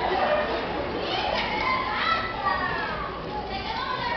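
Several people's voices talking and calling out at once, overlapping and lively.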